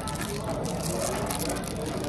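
Restaurant background noise: indistinct chatter from other diners over a steady hum, with no single sound standing out.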